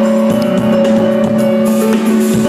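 Thai rock band playing live and loud, heard from within the audience: sustained chord notes held steady over the drum kit.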